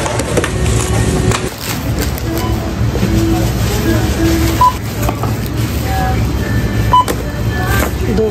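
Checkout register beeping twice as items are rung up, two short single-pitch beeps about two seconds apart, over a steady low hum, store background music and chatter.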